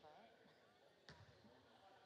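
A basketball bouncing once on the hardwood gym floor about a second in, over faint chatter in the gym.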